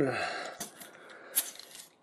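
Hard plastic toy parts being handled and pressed together, with one sharp click about one and a half seconds in as the cannon's peg seats onto the Transformers Hardhead figure.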